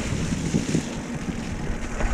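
Wind rumbling on the microphone, mixed with a mountain bike rolling fast over a leaf-covered dirt trail, with a few light clicks and rattles from the bike.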